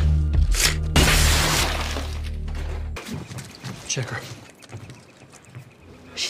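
A loud crash of breaking glass about a second in, lasting about half a second, over bass-heavy music. The music cuts off suddenly about three seconds in.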